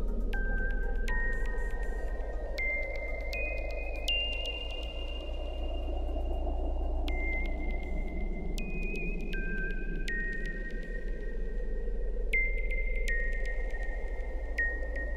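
Electronic ambient synthesizer music. A high, pure-toned synth lead plays a slow melody of held notes that step up and then back down, over a hazy pad and a steady deep bass drone.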